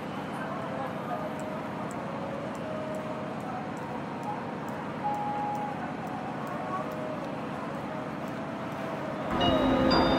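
Railway-station platform ambience: a steady background hiss with faint, scattered voices in the distance. Near the end, a louder sound made of several held tones comes in.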